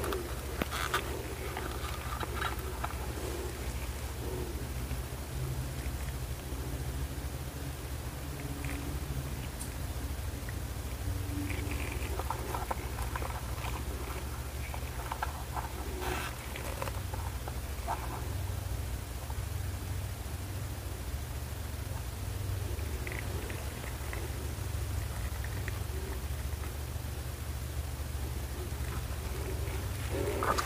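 A steady low hum throughout, with faint, scattered small clicks and rustles from gloved hands handling a silicone resin mold and its tools.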